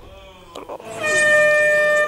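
Game-show losing buzzer: a steady, horn-like tone that sounds about a second in and holds for about a second, signalling that the contestant has failed the challenge.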